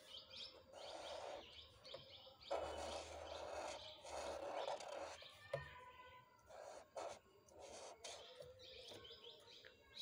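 Faint chirping of small birds in the background, repeated throughout. Over it, a marker scratches softly across paper in drawing strokes, the longest from about two and a half to five seconds in.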